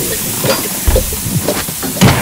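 Steady hiss of smoke and steam pouring from the opened engine compartment of a classic Volkswagen Beetle whose engine has caught fire, with a man coughing.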